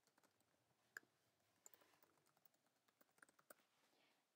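Faint typing on a computer keyboard: scattered single key clicks, with little runs of keystrokes near the middle and again later on.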